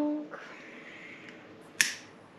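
A match struck once near the end: a single sharp scrape as it flares alight.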